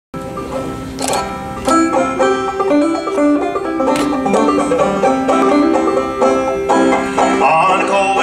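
Solo banjo playing an instrumental introduction to an old-time folk song: a steady run of plucked notes, with a sharper strum about a second in and again at about four seconds.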